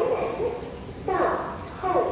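A dog yelping in short cries, each falling in pitch, about one a second.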